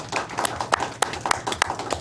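Brief, scattered applause from a small group, irregular overlapping hand claps.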